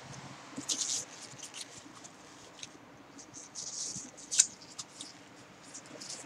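Faint crackles and clicks: a cluster just before a second in, more around the middle, and one sharper click at about four and a half seconds.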